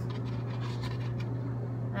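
Faint, light scratching and handling noises as a thin ABS plastic strip is pressed into place on a glued armour piece, over a steady low hum.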